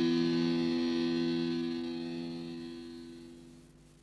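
Final held chord of a death/thrash metal demo track, distorted electric guitar ringing out as steady tones and fading away to silence just before the end.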